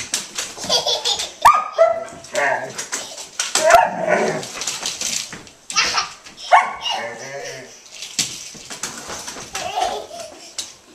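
A large dog barking in short bursts, mixed with a toddler's squeals and laughter, over the rattle and knocks of a toy stroller being pushed across a hardwood floor.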